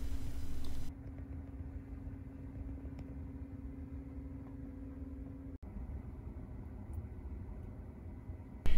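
Faint steady low hum of a parked electric car's cabin, with a steady low tone that cuts off suddenly about five and a half seconds in.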